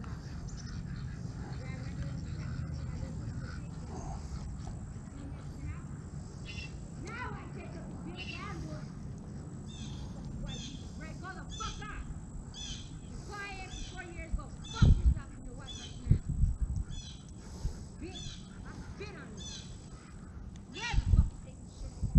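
A woman yelling on and off in the distance, her voice rising and falling, over a steady outdoor background, with a few low thumps about two-thirds of the way through and near the end.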